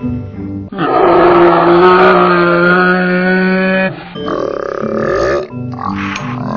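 A cartoon pig's snort, slowed down and pitched down into one long, low, drawn-out grunt of about three seconds, with a second, shorter stretched sound after it, over background music.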